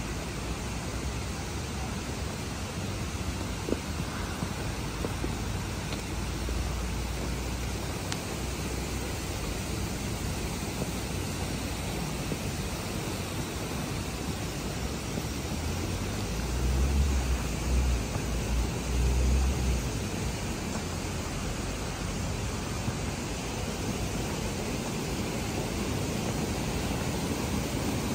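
Steady, even outdoor hiss with no distinct events. About two-thirds of the way through, a few seconds of low rumble like wind buffeting the microphone rise above it.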